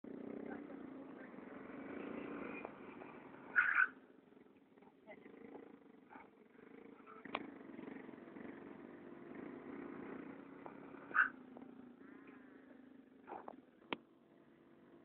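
Small Yamaha Mio automatic scooter running at a distance as it is ridden around, under people's voices. Two short louder bursts stand out, about four seconds in and about eleven seconds in.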